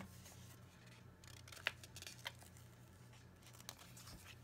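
Faint handling of a paper planner sticker sheet as it is bent and a sticker is taken off: soft rustling with a few light clicks.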